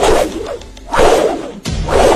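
Edited-in fight sound effects, swishing whooshes for kicks, three of them about a second apart, over background music.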